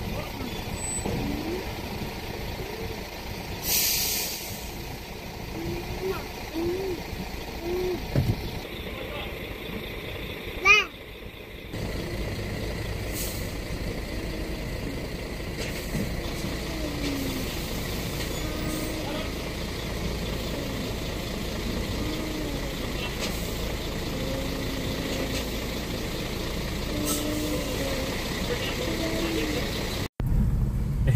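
Heavy diesel Mercedes-Benz cattle truck idling steadily, with a short hiss of air from its air brakes about four seconds in. A brief loud high-pitched sound stands out about eleven seconds in, and short faint calls come and go.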